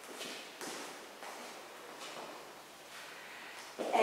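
Heeled dance shoes stepping and scuffing on a hard floor, a few light footfalls roughly every half second to second as the line-dance steps are danced.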